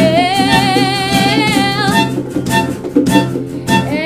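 Rock band music: one long note held with vibrato over guitar and drums for about two seconds, then a run of drum hits.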